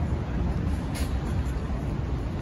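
City street ambience: a steady low rumble of road traffic, with a brief high hiss about a second in.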